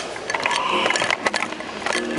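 Handling noise as a camera is fitted back onto a microphone stand and swings around on it: a run of clicks, knocks and scraping from the mount against the stand.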